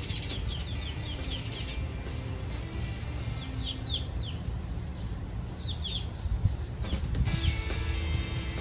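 Small wild birds chirping in the surrounding trees: runs of short, quick falling chirps, a rapid string in the first two seconds and shorter bursts around four and six seconds in, over a steady low rumble.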